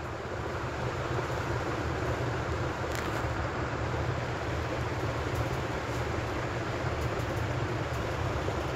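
Steady low rumble with hiss: continuous background noise with no speech, with a faint click about three seconds in.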